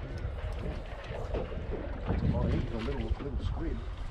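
Wind rumbling on the microphone aboard a drifting boat, with a faint, muffled voice in the middle.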